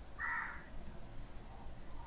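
A single short, faint bird call, about half a second long, near the start.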